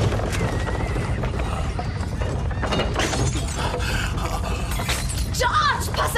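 Earthquake sound effect: a steady low rumble with repeated crashes and glass shattering. A high wavering cry comes near the end.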